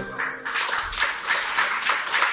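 A recorded song cuts off, and about half a second later an audience starts applauding with steady clapping.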